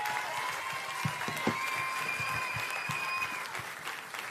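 Studio audience applauding, with a thin high steady tone held through most of it that stops about three and a half seconds in.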